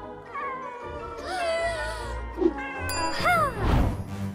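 Three meows over background music with a steady beat: a short one near the start, a longer rising-and-falling one in the middle, and the loudest, a falling meow, near the end.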